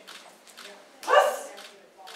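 A single loud, short shout, a kiai, from the karate performer as she strikes with the katana, about a second in.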